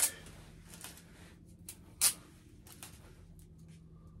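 Quiet handling of taped comic book packaging: a few sharp clicks and crackles, the loudest about two seconds in, as the tape holding the comics together is carefully split. A low steady hum sits underneath.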